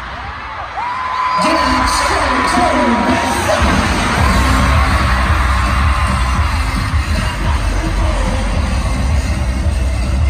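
Live K-pop stadium concert heard from within the crowd: amplified music with a heavy bass that comes in about a second in, with voices and crowd noise over it.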